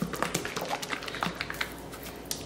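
A bottle of Chobani Complete protein shake being shaken by hand: a quick run of irregular taps and knocks that thins out near the end.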